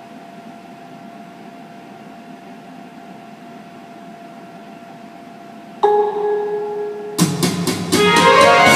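Karaoke backing track starting over the room's wall speaker. A faint steady hum gives way about six seconds in to a sudden bell-like note that fades, and about a second later the song's instrumental intro comes in loudly.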